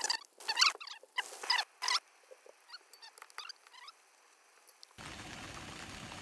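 Crinkling and clicking of a plastic water bottle being handled, sharp crackles over the first two seconds followed by a few faint squeaks. About five seconds in, a steady hiss starts.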